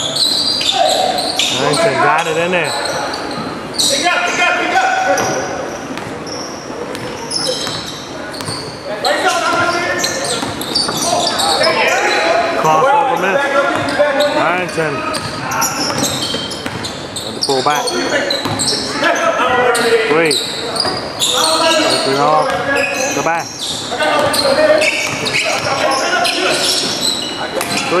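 Basketball game play on a hardwood gym court: a ball bouncing with players' voices calling out, echoing in the large hall.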